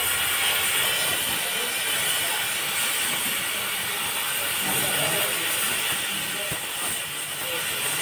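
Oxy-fuel gas cutting torch hissing steadily as its oxygen jet cuts through steel plate.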